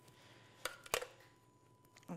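Quiet kitchen room tone with two light clicks about a third of a second apart, from a stainless-steel food-processor jug of mayonnaise being handled.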